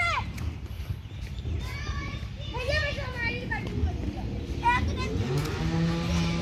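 Children's high voices calling and shouting to each other during a game, over a low steady rumble. Background music with a held note comes in near the end.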